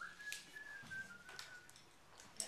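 A person whistling one long, thin note that drifts slightly down in pitch and stops about a second and a half in, with a couple of light clicks.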